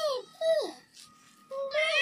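Background music: a high singing voice holding notes that slide downward at the ends of short phrases.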